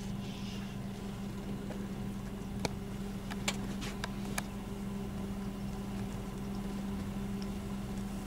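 Game-drive vehicle's engine idling steadily, with a few light clicks near the middle.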